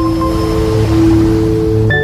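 Logo-reveal intro music: several held tones under a swelling whoosh that peaks about a second in, then a new chord strikes just before the end as the logo settles.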